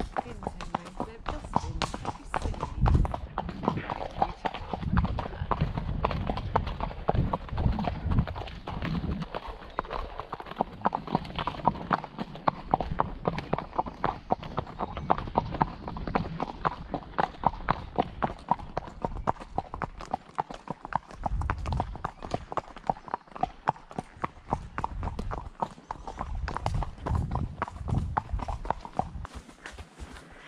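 Horse hooves clip-clopping on a wet tarmac lane, a steady run of hoof strikes.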